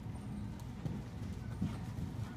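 A horse's hoofbeats as it canters on the soft dirt footing of an indoor arena: a run of dull thuds, with one louder hit near the end.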